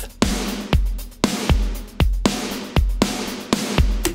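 Drum kit groove played back with a heavily compressed copy blended in (parallel compression from a FET compressor with every ratio button pressed and the fastest attack and release). Hits about twice a second over a steady cymbal wash.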